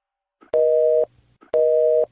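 Telephone busy-signal tone: two steady two-note beeps, each about half a second long with a half-second gap between them.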